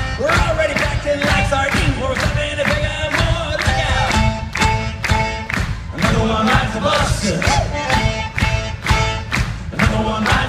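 Loud live rock band music with a fast, steady drum beat and short held notes over it, recorded from among the audience in a concert hall.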